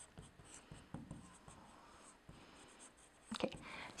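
Marker pen writing on a whiteboard: faint short strokes as characters are written. A brief louder sound comes a little past three seconds in, as the writing stops.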